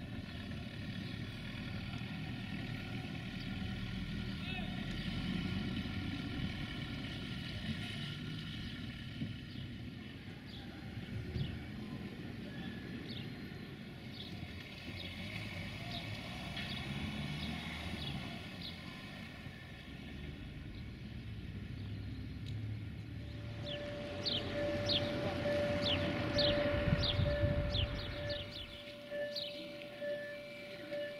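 Small birds chirping in quick, downward-sliding notes over a steady low rumble. A little past two-thirds of the way through, a level-crossing warning signal starts up: a steady, slightly pulsing electronic tone that keeps going, as it does when a train is due at the crossing.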